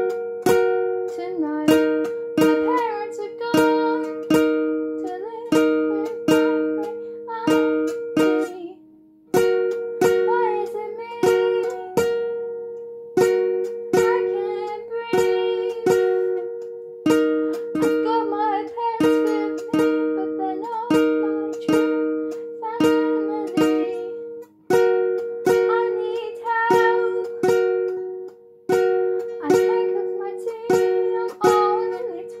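Acoustic guitar strummed in a steady rhythm of about two strokes a second, pausing briefly between phrases, with a girl's voice singing over it at times.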